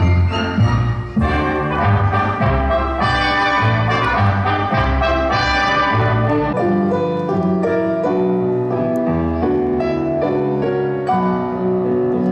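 Instrumental ballet music playing for a dance performance, with strong low notes until about halfway through, after which the bass drops away and a lighter, higher accompaniment carries on.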